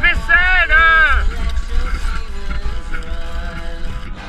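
A person's voice holding one drawn-out, wavering note for about a second at the start, over background music that continues to the end.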